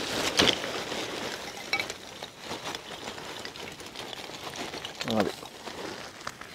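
Lumps of charcoal pouring out of a sack into a brick-lined pit, clattering and clinking as they land. The clatter is densest in the first second, then thins to scattered clinks as the pieces settle.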